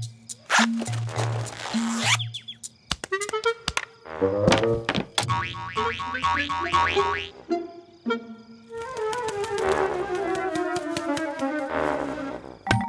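Cartoon music score with comic sound effects: springy boings and thunks, a quick rattling run of knocks in the middle, and a long falling pitch glide near the end.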